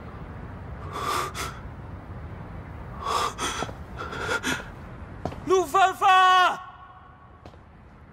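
A young man's voice: a few sharp gasping breaths, then a loud, drawn-out call about five and a half seconds in, over a steady low background hum.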